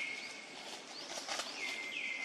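Two high, thin whistled animal calls, each sliding down briefly and then held steady for most of a second; the second begins about one and a half seconds in.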